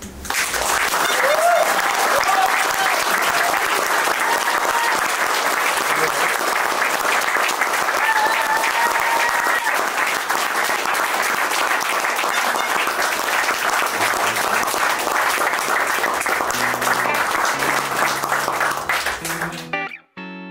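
Audience applauding steadily, with a few cheering voices in the first half. Guitar music comes in quietly under the clapping near the end, and the applause cuts off suddenly.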